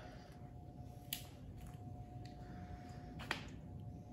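Quiet kitchen with a faint steady hum, and two faint clicks, one about a second in and one just after three seconds, as a cooked lobster is handled in a stainless steel bowl.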